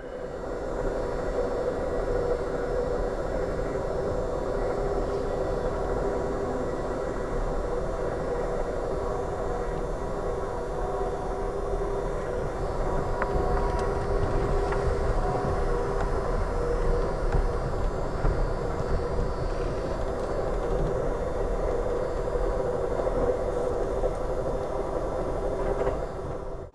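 Amtrak California Zephyr passenger train running at speed, heard from inside the car: a steady low rumble with a constant hum.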